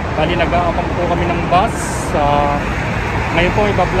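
A voice talking in Tagalog over steady street traffic noise.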